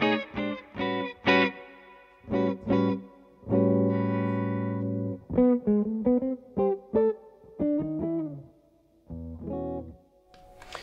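Epiphone Les Paul Muse electric guitar played clean through a Victory amp with no pedals: picked chords and single notes, with one chord left ringing for over a second about three and a half seconds in, followed by a run of single notes that grows softer near the end.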